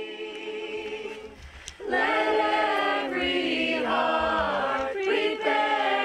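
A group of men and women singing a song together a cappella, getting louder about two seconds in.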